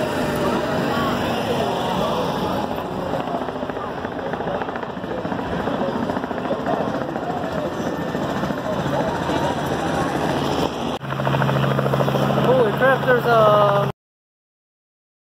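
Fairground crowd chatter. About eleven seconds in it gives way abruptly to a helicopter running: a steady low engine hum with fast, even rotor pulses, and high gliding sounds over it near the end.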